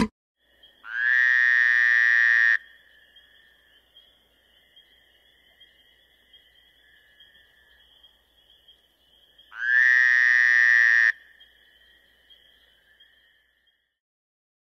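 Two loud, long animal calls, each about a second and a half, opening with a quick rise in pitch and coming about eight seconds apart, over a faint steady high two-toned drone.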